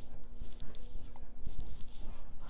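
A few soft knocks and rustles as a hand makes chopping motions, picked up by a clip-on microphone over a faint steady hum.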